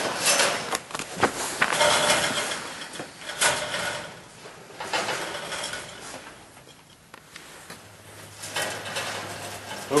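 Rustling and light metallic clicks and rattles of wire rabbit cages as a rabbit is handled and lifted out, busiest in the first few seconds and dying away by the middle. A faint low hum comes in near the end.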